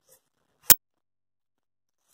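A single sharp click a little under a second in, amid near silence.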